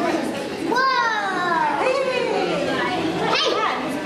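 Children's voices in a crowd, with high-pitched calls that glide down in pitch about a second in and a quick rising call near the end.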